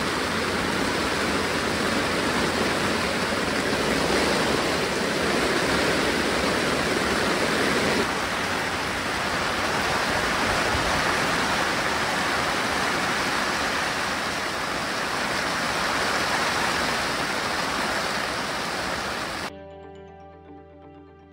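Heavy rain on a fabric pop-up canopy, streaming off its edge in a dense, steady hiss. It cuts off suddenly near the end.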